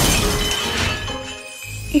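A china teacup smashing: a sudden crash at the start, followed by tinkling shards that die away over about a second and a half.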